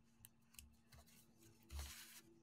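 Near silence with faint rustling of paper and cardstock handled on a cutting mat, and one brief louder rustle near the end.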